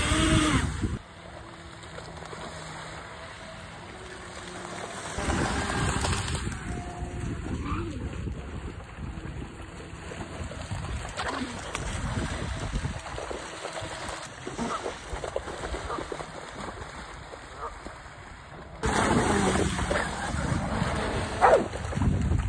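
A 3D-printed jet-drive RC boat's brushless motor and jet pump running on the water, loud at launch and then more distant, with faint tones that shift in pitch as the throttle changes. Water splashes from a dog running through the shallows, loudest around five seconds in and again near the end.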